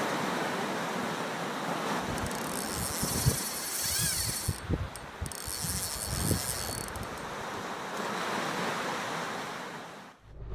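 Steady rushing noise of wind and sea, with a run of low thumps in the middle few seconds.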